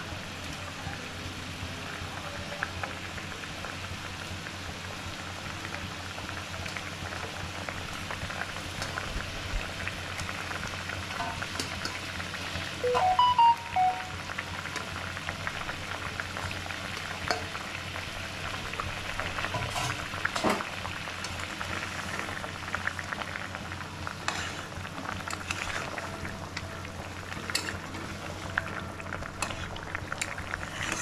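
Masala fish curry gravy boiling and sizzling in a steel kadai: a steady hiss of bubbling with occasional spatula clicks. A short burst of chirpy tones, the loudest sound, comes about thirteen seconds in.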